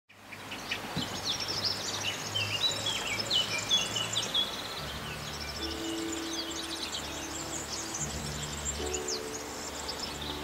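Several birds chirping and singing, a busy run of short high chirps and trills that fades in at the start. Low, steady sustained notes run underneath, thickening from about halfway.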